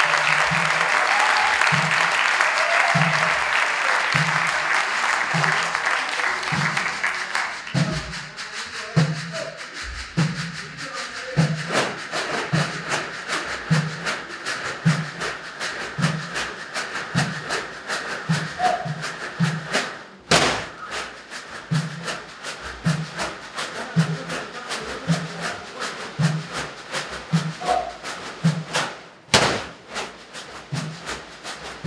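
Audience applause fading out over the first several seconds while a percussion ensemble plays a steady rhythm on large plastic water jugs and bottles: deep thumps a little more than once a second under quicker sharp strikes, with a loud single hit near the middle and another near the end.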